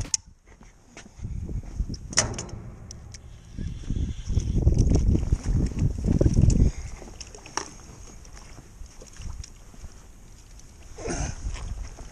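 Handling noise from a landing net being worked out over the water to scoop up a fish: an uneven low rumble, loudest in the middle, with a few sharp clicks, then a brief splashy noise near the end as the fish comes up in the net.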